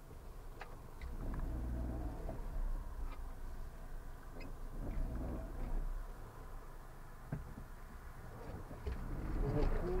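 Low steady rumble of a car engine running, with faint, indistinct voices over it and voices growing clearer near the end.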